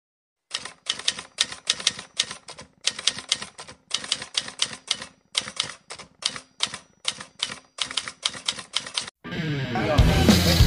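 Typewriter keystroke sound effect: rapid sharp clicks, about five or six a second, in short runs broken by brief pauses, as a caption types out line by line. Music comes in just before the end.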